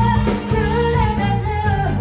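A live band playing: a woman singing a held, sliding melody line into a microphone over electric guitar and low accompaniment.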